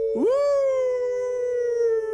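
A man imitating a wolf howl: one long "aooo" that swoops up about a quarter second in and then holds, slowly sinking in pitch.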